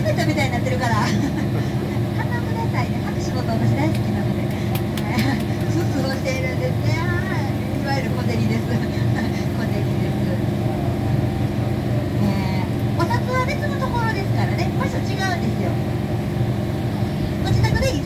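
Amphibious duck-tour bus afloat, its engine running with a steady low drone as it cruises on the river, with passengers' voices chatting over it.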